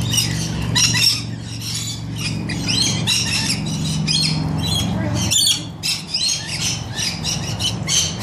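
Rainbow lorikeets squawking, shrill short calls coming several times a second. Under them is a low steady hum that cuts off suddenly about five seconds in.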